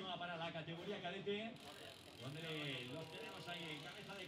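Mountain bike rear hub freewheel ticking fast and faintly as the rear wheel turns, with faint voices in the background.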